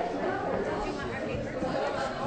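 Many people talking at once in small discussion groups: a steady hubbub of overlapping conversations in which no single voice stands out.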